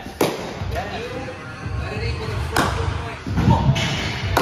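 Three sharp thuds, about a quarter second in, past the middle and near the end, over background music with a singing voice.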